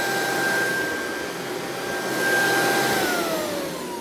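Blower-fed tube burner running loud: a steady fan whine over a dense rush of air. About three seconds in, the whine falls in pitch as the blower is slowed down.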